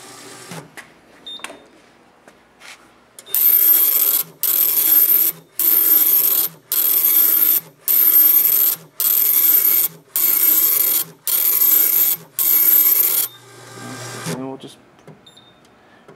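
The Kaye Digistrip 4 Plus Validator's built-in printer printing its self-test: nine even bursts of printing, each about a second long with short pauses between, one line after another, starting about three seconds in. A few faint clicks come before the printing starts.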